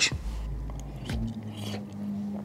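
A metal spoon scooping gumbo from a bowl, with a few faint clinks, then a mouthful being tasted and a low held hum of enjoyment from about halfway through.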